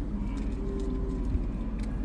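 Vehicle engine idling with a steady low hum, heard from inside the cabin.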